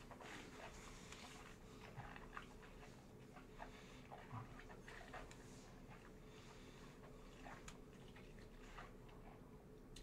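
Near silence with faint, scattered mouth noises: small wet clicks and lip smacks from a mouthful of whisky being worked around the mouth and swallowed.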